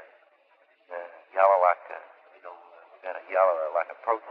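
A man talking over a telephone line, the voice thin and narrow as on a taped phone call, starting about a second in after a brief pause.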